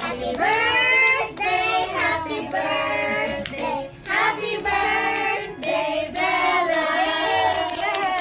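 High voices singing a song together, with hand claps scattered through it.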